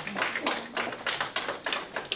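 Audience applauding, many separate claps.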